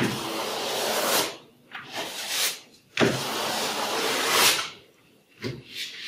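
A flat painting tool scraped across paper, spreading cold wax and oil paint in broad strokes: two long rasping strokes of over a second each, with a shorter one between them.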